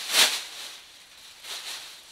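Large plastic garbage bag rustling as it is shaken open, loudest about a quarter second in, then dying down to faint crinkles.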